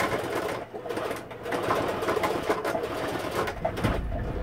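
Singer electric sewing machine running, its needle stitching fabric in a rapid, steady run with a brief slowdown a little under a second in.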